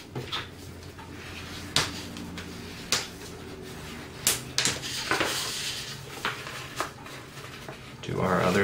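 Cardstock being folded and creased by hand on a wooden tabletop: a few separate sharp taps and crackles, with a brief rustle of the paper about five seconds in.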